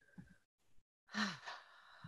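A woman's brief sigh about a second in, a breathy exhale with a falling voice; otherwise quiet.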